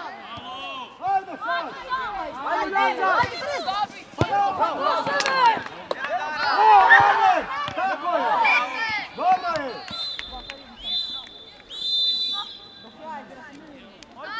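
Shouting from players and coaches on a youth football pitch, many voices overlapping, with a sharp knock of a ball kick about five seconds in. Near the end come three short, high, steady tones a second apart.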